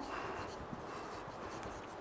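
Faint sound of a marker pen writing on a whiteboard.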